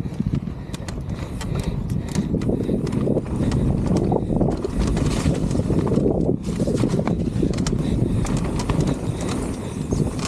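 Mountain bike being ridden fast over dirt jumps and down a dirt trail: a steady low rushing noise from the riding, with the bike rattling and knocking over bumps. The noise builds over the first few seconds and dips briefly around the middle.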